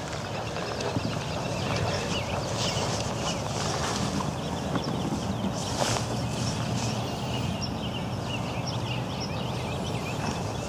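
Outdoor ambience of many small birds chirping in quick, repeated short notes over a steady low background rumble.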